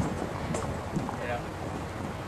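Wind buffeting the microphone: an uneven low rumble with a few small knocks.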